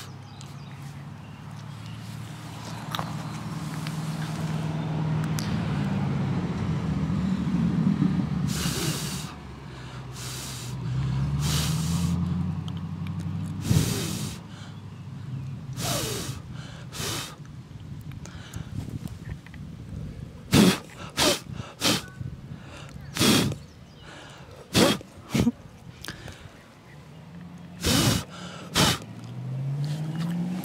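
A person blowing hard at a dandelion seed head in a series of short, sharp puffs of breath. A motor vehicle's engine hum rises and falls behind it, loudest in the first half.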